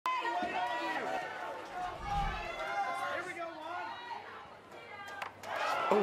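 Baseball spectators chattering, many voices overlapping with no single clear speaker. About five seconds in a short sharp knock, the pitch striking the batter's helmet, and voices rise in alarm at the very end.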